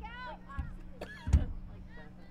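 Brief voices, with a single sharp knock a little over a second in that is the loudest sound.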